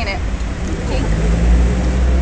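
Low rumble of road traffic, swelling about a second and a half in, with a steady low engine hum over the last second.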